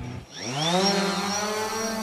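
Small quadcopter drone's electric motors spinning up: a buzzing whine that rises in pitch over about half a second, then holds steady as it hovers.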